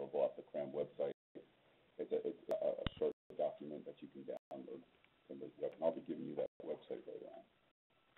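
A man's voice lecturing over narrowband, telephone-quality audio, in phrases broken by short pauses, with a brief click about three seconds in.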